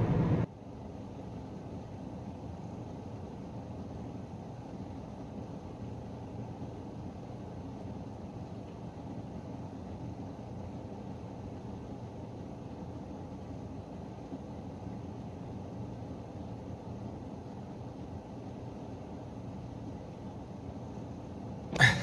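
Steady low hum of a car idling, heard from inside its cabin.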